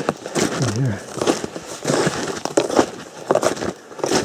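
Snowshoe footsteps crunching in packed snow at a walking pace.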